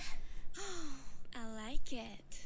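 The song's backing drops out and a woman's breathy voice fills the break: a falling sighed "ah" about half a second in, then a short spoken line, "I like it", near the end.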